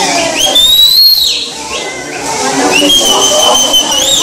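Shrill whistling over a din of voices: one whistle slides up and holds about half a second in, and a second steady whistle sounds near the end.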